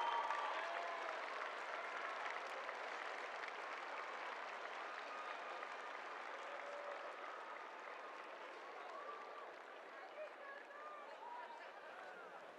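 Large stadium crowd cheering and applauding, with scattered shouts and whoops; the applause slowly dies down.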